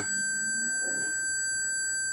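Maxitronix electronics kit's transistor oscillator driving its small speaker with a steady 1.5 kHz square wave: one unbroken, shrill single-pitch tone with ringing overtones above it.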